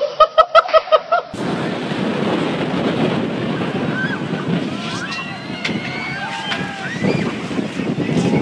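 A short run of laughter, about six quick bursts, then a sudden cut to strong wind buffeting the microphone. High voices shout and cry out over the wind in the middle of the stretch as a large inflatable beach slide is blown over.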